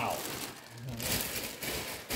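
Clear plastic packaging bag crinkling as it is handled, the rustle getting brighter about halfway through.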